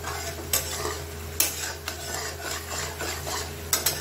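A spatula stirring and scraping a thick masala paste as it fries in a metal kadai, with a soft sizzle and a few sharp knocks of the spatula against the pan. The paste is being roasted (bhuna) in butter and oil.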